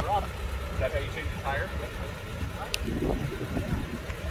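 A 1948 Davis three-wheeler's engine idling with a steady low rumble, with faint voices talking over it.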